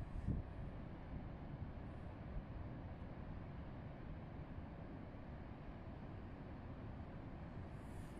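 Niagara Falls' falling water making a steady, even rushing noise with no breaks.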